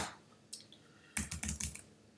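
Keystrokes on a computer keyboard: a sharp key click at the start, a faint one about half a second in, then a quick run of keystrokes in the second half.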